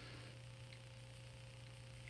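Near silence with a faint, steady low electrical hum and a fainter higher steady tone above it.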